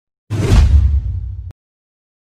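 A whoosh-and-boom transition sound effect: a rush of noise falling in pitch over a heavy low rumble. It starts about a third of a second in and cuts off suddenly after about a second.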